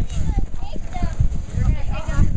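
Indistinct chatter of several voices in the background, with irregular low bumps and knocks throughout.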